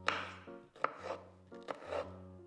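A knife cutting through soft mango flesh and knocking on a wooden cutting board: four cuts, the first the loudest, over background music.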